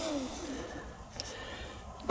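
A man's drawn-out hesitation sound trailing off in the first half second, then a faint steady background with one small click about a second in.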